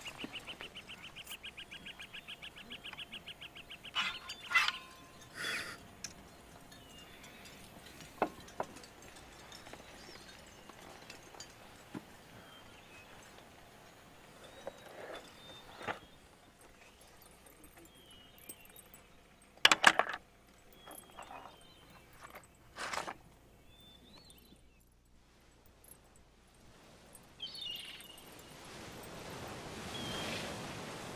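Quiet handling noises: a fast rattle for the first few seconds, then scattered small clicks and knocks, the loudest a sharp double click about twenty seconds in.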